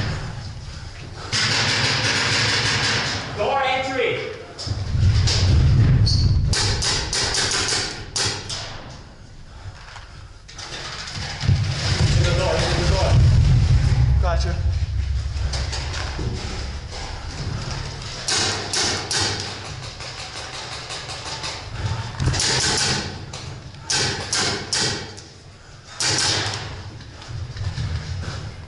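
Paintball markers firing in rapid bursts, quick strings of sharp pops several times, with deep rumbling movement noise and muffled shouting in between.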